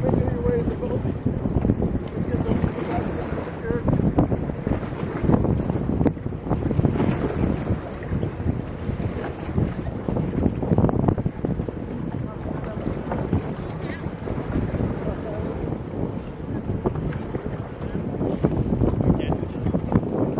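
Wind buffeting the microphone over sea water splashing and slapping around an inflatable boat as swimmers are pulled aboard, with voices calling out now and then.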